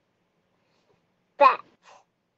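Near silence, then one short spoken word about a second and a half in: a voice reading the name "Pat" from a lesson slide.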